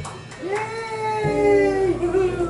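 A man's voice singing one long held note into the microphone as the drums stop, sliding up in pitch at the start; a low bass note comes in about halfway through.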